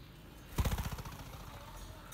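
A dove's wings clapping and flapping rapidly as it takes off from a hand, a quick run of wingbeats about half a second in that fades within half a second.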